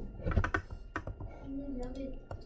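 A few scattered clicks and taps at a computer keyboard and mouse, with a faint voice murmuring near the end.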